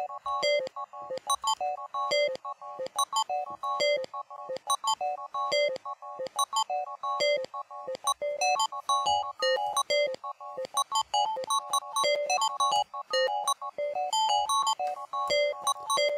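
A sliced audio loop played back by a software slicer as a stepped rhythmic pattern: a quick run of short, bell-like synth notes, several a second, at a steady tempo.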